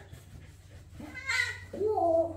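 Sphynx cat meowing twice while being rubbed dry with a towel: a short call about a second and a half in, then a longer call that rises and falls at the end.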